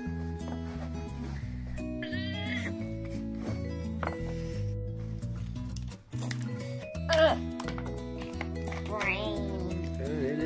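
Background music with steady low notes, with a few short high-pitched vocal sounds over it. The music drops out for a moment about six seconds in.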